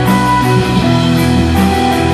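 Live rock band playing an instrumental passage: electric guitars hold sustained notes over drums, with a steady run of cymbal strokes.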